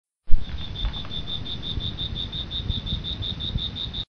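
Cricket chirping in an even high-pitched pulse, about six chirps a second, over a low rumble. It starts with a loud low thump and cuts off abruptly.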